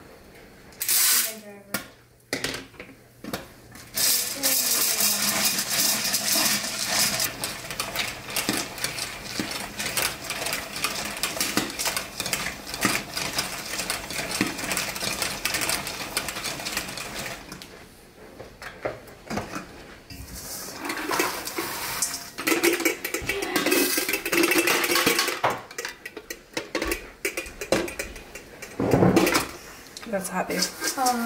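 Popcorn kernels poured into an aluminium stovetop crank popper, then popping inside it: a dense run of pops and metal rattling in two long stretches. Sausages sizzle in a cast-iron skillet alongside.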